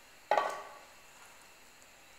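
A single sharp clink with a short ring, about a third of a second in, from a glass measuring cup knocking against a pot or the counter.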